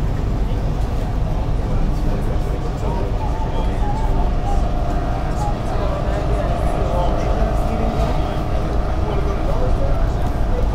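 SEPTA electric commuter train heard from inside the car while it runs at speed: a steady, loud low rumble of wheels on track. A faint, even motor whine joins in about three and a half seconds in, with faint voices in the car.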